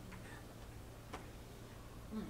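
Quiet room tone with a steady low hum, broken by a single short click about a second in.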